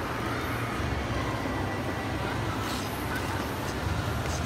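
Ambient noise of a busy indoor ice rink: a steady low hum under a constant wash of skating and crowd noise, with a few faint brief scrapes near the end.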